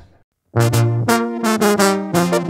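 A Mexican banda ensemble starts playing about half a second in, after a brief silence: brass horns over a tuba bass line, held notes in a lively rhythm.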